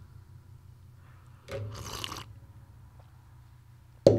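Low steady hum, with a brief soft handling noise about a second and a half in as a pen is laid on a small digital pocket scale, and a faint tick later.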